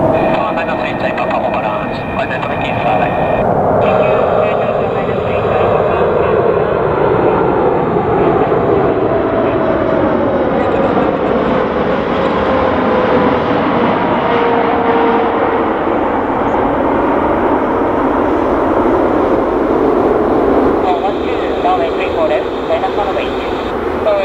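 Boeing 747-8 freighter on final approach with gear down, passing low overhead on its four GEnx turbofans. A loud, steady jet noise carries a whine that slides down in pitch as the aircraft goes past, about halfway through.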